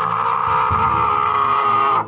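A long, loud human scream held on one high pitch, cutting off suddenly at the end, with low pulsing music underneath.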